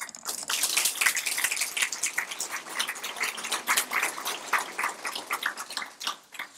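Audience applauding: a dense patter of many hands clapping that starts at once and fades away near the end.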